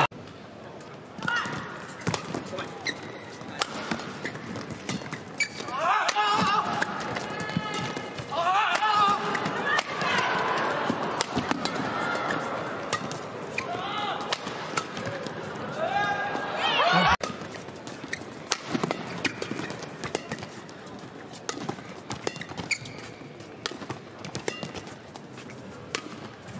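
Badminton rallies: shuttlecock hits from the rackets and players' footwork on the court, under the voices of an arena crowd. The crowd shouting swells loudest through the middle and drops off suddenly a little after halfway.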